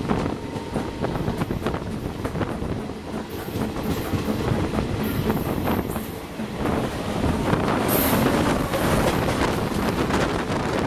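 Passenger train running noise heard from an open coach door: wheels clicking over rail joints and points, with brief high wheel squeals. From about seven seconds in it grows louder as an express hauled by a WAP7 electric locomotive passes close by on the next track.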